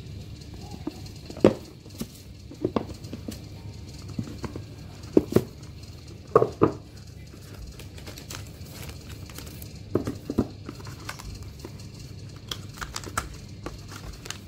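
Cardboard tablet packaging being handled and opened: the outer sleeve slides off and the box lid and inner insert are lifted. This gives a series of short knocks and scrapes in clusters, the loudest in the first half, with lighter clicks near the end, over a low steady hum.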